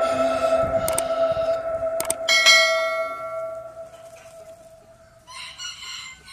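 Bell-like ringing tones fade away, with a sharper chime struck about two seconds in. Near the end a chicken clucks briefly.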